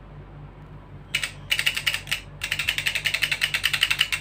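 Plastic ratchet of a Stand360 tablet stand clicking rapidly, a dozen or so clicks a second, as the tablet holder is turned by hand. The clicking comes in three runs starting about a second in, the last and longest lasting nearly two seconds.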